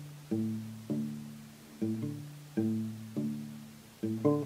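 Nylon-string classical guitar playing palm-muted open bass strings in the D–A–D–A pattern on strings 6, 5, 4 and 5, with the sixth string tuned down to D. Five separate low notes are plucked, each one short but still clearly pitched and fading before the next.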